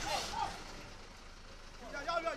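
A man's voice trails off in the first half second, then a low, even background noise of an outdoor street scene, with the voice starting up again right at the end.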